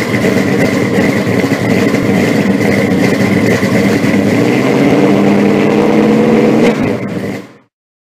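A car engine running loud and revving, with a steady high whine above it, cutting off suddenly near the end.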